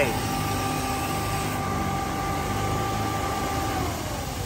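Hyundai Santa Fe idling with its air-conditioning running: a steady hum with a faint high whine that fades out just before the end.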